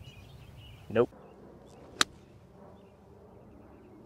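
A golf club striking a ball about two seconds in: a single sharp click on a short approach shot.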